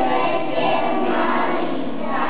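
A group of young children singing together in unison, with sustained sung notes.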